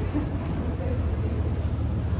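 Airport terminal hall ambience: a steady low hum under a wash of background noise, with faint distant voices.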